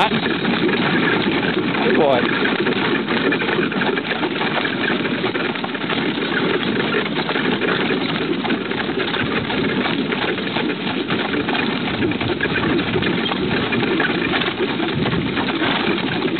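Horse-drawn carriage moving along a gravel road: a steady, dense rumble and rattle of the wheels and hooves on the gravel, with the jingle of harness.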